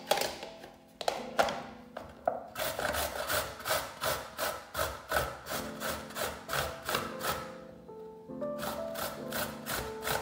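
Ginger root being grated on a stainless-steel hand grater: rasping strokes, sparse at first, then a fast, even rhythm with a brief pause about eight seconds in.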